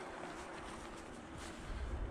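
Quiet outdoor background noise: a faint, steady low rumble of wind on the microphone.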